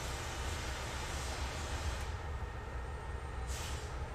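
Steady roar of a glassblowing hot shop's furnaces and glory hole. A high hiss over the low rumble drops away about halfway through and comes back briefly near the end.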